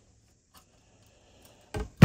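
Quiet handling of a 3D-printer filament spool on a cutting mat: a couple of faint clicks, then one short plastic knock near the end as the spool is set down.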